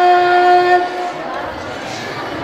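A girl's solo voice holding one long sung note through a microphone. The note ends just under a second in, leaving a quieter background.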